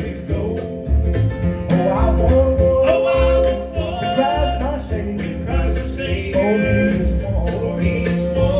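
A live bluegrass trio of mandolin, acoustic guitar and upright bass plays an instrumental passage, with the bass thumping a steady beat under the picked strings.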